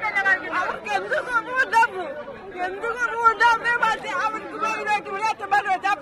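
Speech: a woman talking in Malayalam into news microphones, with crowd chatter around her.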